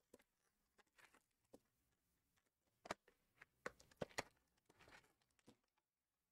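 Near silence broken by faint handling noises from a cardboard trading-card box being opened: a few light clicks and taps, bunched about three to four seconds in, and a soft rustle of cardboard.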